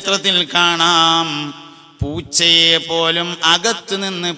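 A man chanting in a drawn-out melodic style, holding long notes. The voice fades out about one and a half seconds in, then comes back sharply half a second later and carries on.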